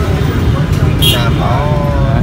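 A man speaking briefly over a steady low background rumble, with a short hiss about a second in.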